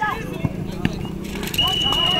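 A single steady whistle blast, like a referee's whistle stopping play, starts about one and a half seconds in and holds for under a second over shouting voices on the field. Before it come two sharp knocks, like the ball being kicked.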